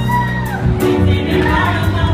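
A live band playing a song, a woman singing lead into a microphone over bass and drums, her voice holding notes and sliding between them. Heard in a large hall.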